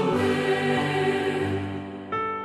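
A choir singing a hymn, holding a sustained chord that fades away toward the end.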